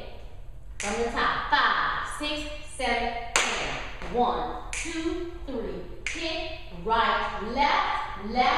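A woman's voice sounding along without clear words over the taps and stomps of shoes on a hard studio floor, as a line-dance sequence is stepped out.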